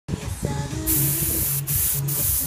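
Airbrush spraying paint: a steady hiss that starts just under a second in and breaks off briefly near the end, over background music.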